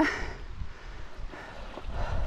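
Wind rumbling on the microphone, with a few faint scuffs of boots and hands on rock as a hiker scrambles up scree.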